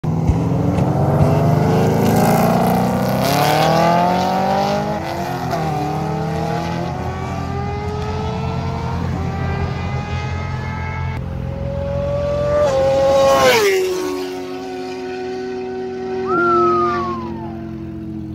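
C6 Corvette's LS3 V8 with aftermarket heads and cam at full throttle, its pitch climbing through several gear changes as it approaches. About 13 seconds in it passes close by with a sharp fall in pitch, then runs on lower as it pulls away, with a brief rev near the end.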